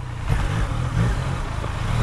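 Yamaha MT-09's three-cylinder engine running at low revs as the motorcycle rolls slowly, its note wavering slightly.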